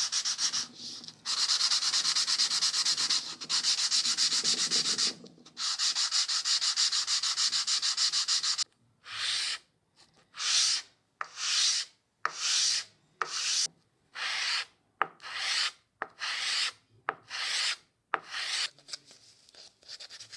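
A small wooden marking-gauge part is rubbed by hand, face-down on a sheet of sandpaper laid flat, sanding its face. At first it is a quick continuous scrubbing. From about halfway it changes to slower, separate long strokes, roughly one and a half a second.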